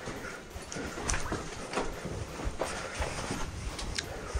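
Footsteps on wet rock and loose stones: an irregular series of short knocks and scrapes as people pick their way over a slippery cave floor.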